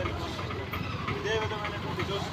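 A voice talking, not close to the microphone, over a steady low mechanical hum.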